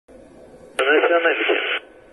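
A short ship-to-ship radio transmission: a voice speaks for about a second, thin and band-limited as heard through a marine radio, over a low steady hiss, starting and stopping abruptly.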